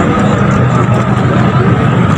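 Loud, steady noise of a busy outdoor crowd, with people's voices mixed in.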